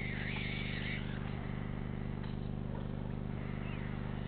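Steady electrical hum and buzz from the stork-nest webcam's audio feed. A faint wavering whistle-like call is heard over the first second.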